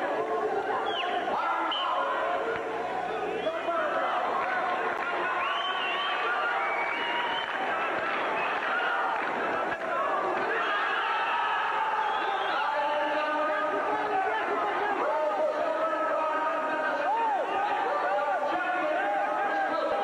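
Spectators in an arena talking and shouting, many voices overlapping at a steady level.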